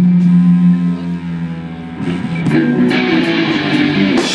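Live rock band at a drum break: the drums drop out and a held low electric guitar note rings for about two seconds. Then the guitar playing picks up again with new notes.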